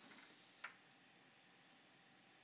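Near silence with one faint, short click of wooden stacking-toy rings being handled, about half a second in.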